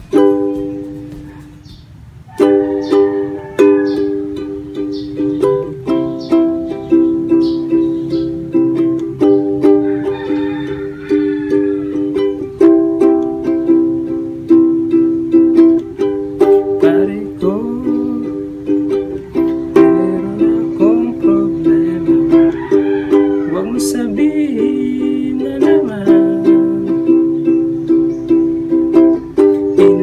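Ukulele strummed in a repeating down-down-down-up-up-up-up-up-down-up pattern, switching between G and C chords. It opens with a chord ringing out and dying away, then the strumming starts again about two seconds in.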